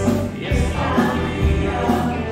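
Live band playing a pop-rock song, with drums keeping a steady beat, bass guitar, guitars and keyboards, and voices singing over them.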